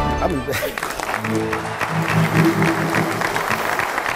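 Studio audience applauding, with voices mixed in; a music sting cuts off about half a second in as the clapping starts.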